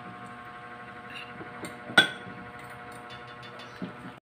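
A utensil clinking against a dish, with one sharp clink about two seconds in and a few lighter ticks around it, over a faint steady hum.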